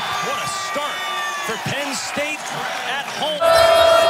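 Basketball dribbled on a hardwood court, the bounces coming about three a second, with short high sneaker-like squeaks over arena noise. About three and a half seconds in, a louder held tone starts suddenly.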